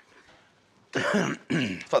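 A man clearing his throat twice in quick succession, starting about a second in.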